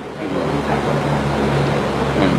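A steady low mechanical hum comes up a moment after the start and holds at an even level.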